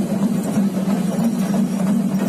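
A steady low hum, loud and unchanging, over a general haze of noise from a large outdoor crowd.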